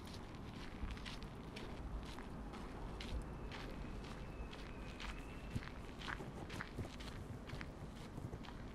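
Footsteps walking at a steady pace on a packed dirt path, about two steps a second, over a low steady background rumble.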